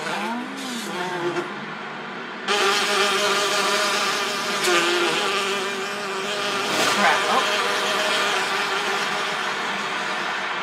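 Brief laughter, then about two and a half seconds in a sudden loud buzzing drone with a wavering pitch starts and keeps going: a sound from the music video's soundtrack.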